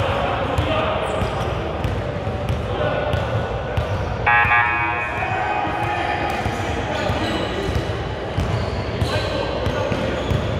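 A basketball bouncing on a hardwood gym floor, with players' voices ringing in the hall. About four seconds in, a loud electric buzzer sounds for under a second.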